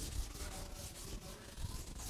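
A string of short, scratchy rubbing strokes across a teaching board, two or three a second.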